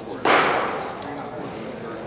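A single sharp smack of a baseball landing in a leather glove, about a quarter second in, echoing briefly in the large indoor hall.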